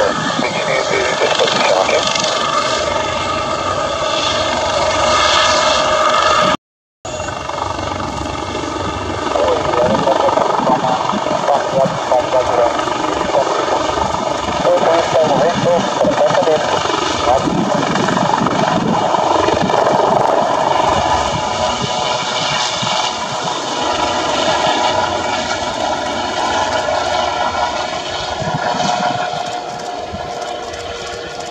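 Helibras HM-1 Panther twin-turbine helicopter with a shrouded fenestron tail rotor, running at takeoff power as it lifts into a hover and departs: a loud, steady turbine whine over the beating of the main rotor. The sound cuts out completely for about half a second near a quarter of the way in.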